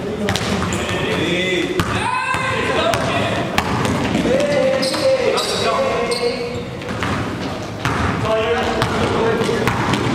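A basketball being dribbled and bounced on a gym floor, each bounce a sharp knock that echoes in the large hall, over players shouting and calling out on the court.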